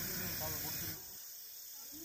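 Crickets chirping steadily in the night forest, a faint high-pitched hum of insects.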